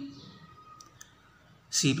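A couple of faint, light clicks about a second in, in a short gap between a man's speech.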